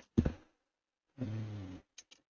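A man's short, loud, breathy vocal burst, then a low wordless hum held for about half a second.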